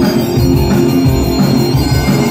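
Loud live Breton punk rock: the band's Breton bagpipes play a sustained melody over a droning tone, with distorted electric guitar and a steady beat.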